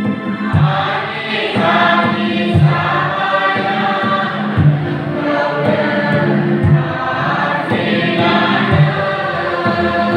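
A church congregation singing a Bodo-language hymn together, with a low drum beat about once a second under the voices.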